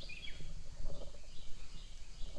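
Birds chirping in short calls in the background over low rumbling handling noise from a camera being moved by hand.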